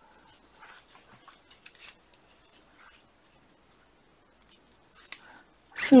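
Metal circular knitting needle tips clicking faintly and yarn rubbing as stitches are worked, in scattered small ticks, the most distinct a little under two seconds in.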